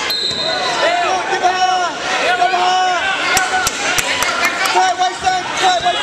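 Coaches and spectators yelling in a gymnasium during a wrestling bout, overlapping drawn-out shouts with no clear words. A handful of sharp smacks come about halfway through.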